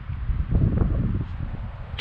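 Wind buffeting the microphone: a rough, low rumble that swells about half a second in and eases toward the end.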